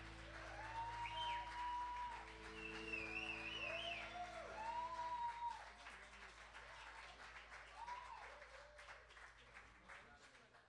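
The band's last chord rings out and dies away over the first few seconds while the audience applauds, cheers and whistles. The clapping then thins out and fades.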